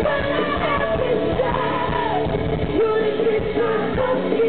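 Live rock band playing: a female lead vocal sings over electric guitars and drums, loud and continuous.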